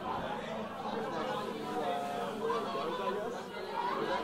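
Many people talking at once at a low level: an audience chatting between songs, with no music playing.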